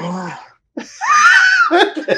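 A man's high-pitched, wheezy laugh that rises and then falls in pitch over about a second.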